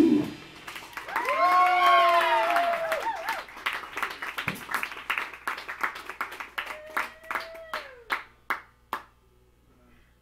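Small bar audience clapping and cheering as a rock song ends: a long whooping shout, then scattered handclaps that thin out and stop about nine seconds in.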